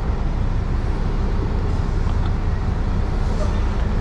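Semi-truck diesel engine running steadily at low speed, a low rumble, while the tractor-trailer is slowly maneuvered into a loading dock.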